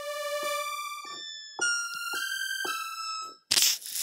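Helium synthesizer playing sustained, bell-like electronic notes in an evolving patch that crossfades from a bell toward a unison saw, its evolve LFO slowed down. The notes change pitch about a second and a half in and cut off shortly before the end, followed by a short burst of hiss.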